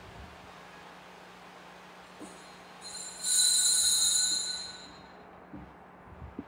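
A shrill ringing of several steady high tones, swelling in about three seconds in, held for about a second and a half, then fading out; a faint low hum and a few soft knocks beneath it.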